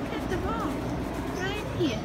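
Indistinct voice sounds, with short rising and falling pitch contours, over a steady low hum.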